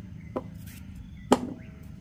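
Raw potato being cut into chunks by hand over a stainless steel pot, with two sharp knocks about a second apart, the second louder and briefly ringing, as pieces drop into the pot.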